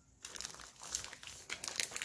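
Clear plastic wrapping crinkling as a shrink-wrapped pack of kite-string spools is grabbed off a shelf and handled, starting a moment in as a dense run of sharp crackles.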